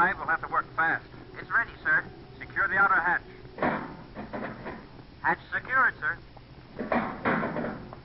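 Voices speaking in an old radio drama recording, in short phrases with pauses between them.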